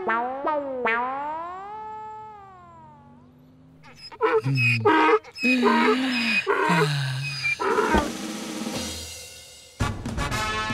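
Added film sound effects: a tone swooping down and up in pitch several times in the first three seconds, then an animal roar in several pulses from about four to eight seconds in.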